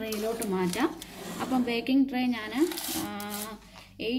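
A woman talking in Malayalam; speech is the main sound throughout.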